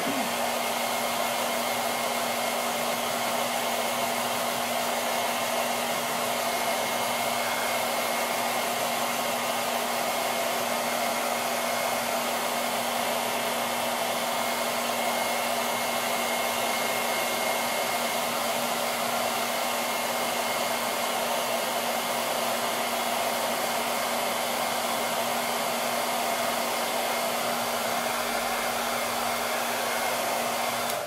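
Handheld hair dryer running steadily, a rushing air noise with a steady low hum and a faint high whine.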